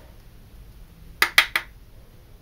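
Three quick, light clicks of small hard objects knocking together as makeup is handled, a little over a second in, over a faint room hiss.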